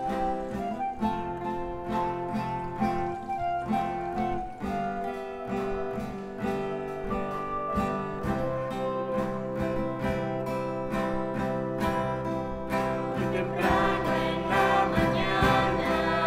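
Acoustic guitar strumming chords in a steady rhythm as a hymn accompaniment, with singing joining in near the end.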